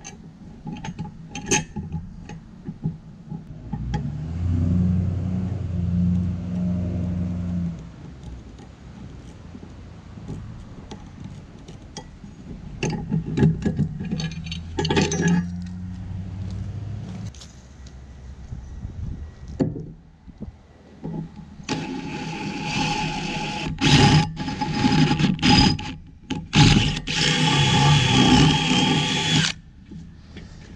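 A cordless drill boring through the steel trailer tongue, a loud grinding whine with a steady high whistle for about eight seconds near the end. Earlier there are scattered metallic clicks and clanks and stretches of a lower steady hum.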